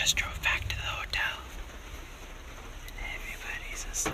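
A person whispering a few words during the first second and again about three seconds in, over the low, steady rumble of a car cabin.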